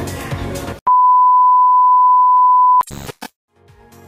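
Background music stops, then a loud electronic beep at one steady pitch sounds for about two seconds, cut off abruptly and followed by a couple of short clicks and a moment of silence before the music comes back in.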